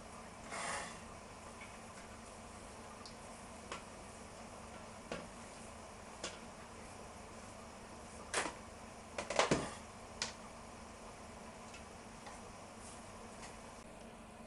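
A few scattered knocks and clatters over a quiet room background, as shredded cabbage is tipped and scraped from a plastic chopping board into a stainless steel colander; the loudest clatters come in a cluster about nine seconds in.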